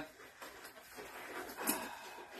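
Disposable glove being pulled onto a hand: faint rustling, with a brief sharper click about three-quarters of the way through.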